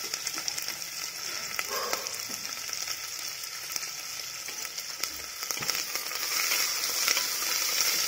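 Sliced onions sizzling in hot oil in an aluminium pressure cooker pot, a steady high hiss dotted with small crackles. The sizzle grows louder over the last two seconds. The onions are being fried toward golden brown.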